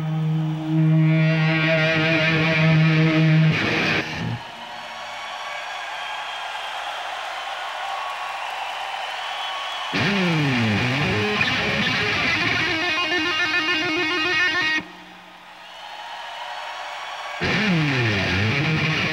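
Solo electric guitar played live. It opens with loud held notes, then drops to a softer, hazier passage. About ten seconds in, the notes swoop sharply down and back up in pitch, and this comes back after a short quiet dip near the end.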